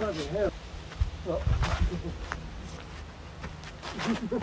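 A man's voice in short bursts at the very start and again about a second in, over gusts of wind buffeting the microphone. There are two short sharp sounds in the middle.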